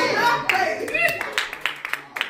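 A voice calls out briefly, then hand claps start about a second in and keep a steady beat of about four claps a second.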